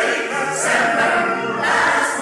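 Mixed choir singing held chords, with crisp 's' consonants sung together about half a second in and again near the end.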